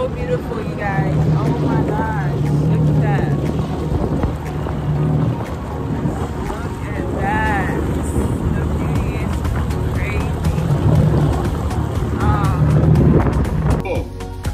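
Jet ski engine running steadily at speed, with wind on the microphone. A sung or spoken voice line runs over it, and the sound changes abruptly just before the end.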